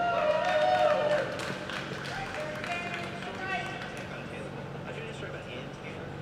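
Indistinct voices talking in the background over a steady low hum, loudest in the first second or so, then quieter.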